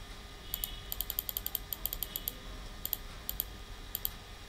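Quick run of sharp computer mouse clicks, about twenty in all. They come fast through the first half and then thin out to a few scattered pairs.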